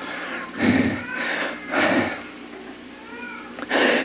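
Laughter from the preacher and congregation following a joke: three short bursts of laughing in the first two seconds, then a fainter, higher laughing voice rising and falling about three seconds in.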